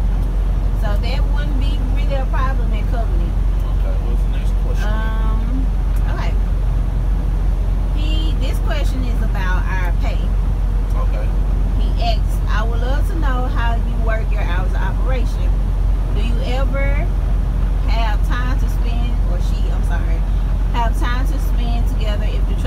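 A man talking inside a moving semi-truck cab, over the steady low rumble of the truck's engine and road noise at highway speed.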